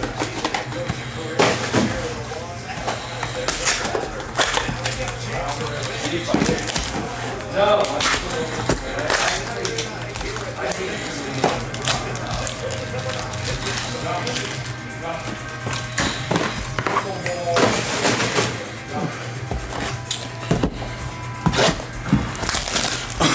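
Cardboard Bowman Chrome hobby boxes being torn open and foil card packs handled, with repeated short tearing and rustling noises, over background music.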